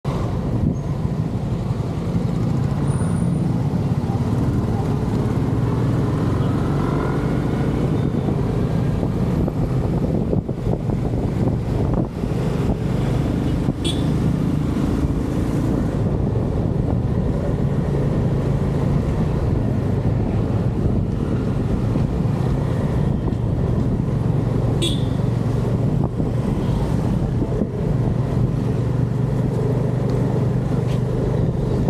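Motorcycle engine running steadily at riding speed, a continuous low drone with road noise from passing traffic.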